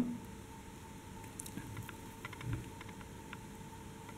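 Faint scattered clicks and rustles of hand beadwork: a beading needle passing through small glass seed beads and the thread being drawn through them.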